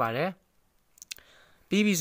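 A quick double click about a second in, in a quiet gap between stretches of a man's voice.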